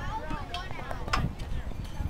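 Indistinct chatter of several voices nearby, with one sharp click a little over a second in.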